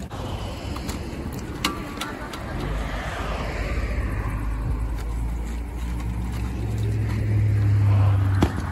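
A motor vehicle running: a steady low rumble that grows louder toward the end, with a falling whoosh a few seconds in and a few sharp clicks.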